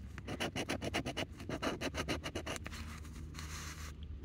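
A coin scratching the latex coating off a scratch-off lottery ticket in quick repeated strokes, which stop about three seconds in.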